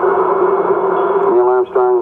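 Archival Apollo 11 launch-countdown broadcast between phrases: radio hiss with a steady hum, and the announcer's voice coming back in about two-thirds of the way through.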